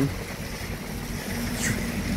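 Steady low rumble of city street traffic, with a short falling hiss about three-quarters of the way through.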